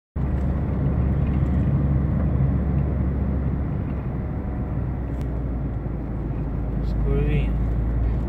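Car engine and tyre noise heard from inside the cabin while driving: a steady low rumble with a faint engine hum, and a brief voice near the end.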